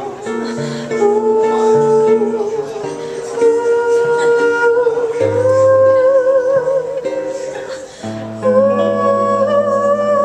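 A female jazz vocalist singing long held notes with vibrato, accompanied by guitar chords. The voice dips briefly about eight seconds in, then comes back louder.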